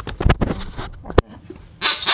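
Knocks and rubbing from a hand handling the action camera close to its microphone, a quick run of dull bumps ending in one sharp knock a little after a second in.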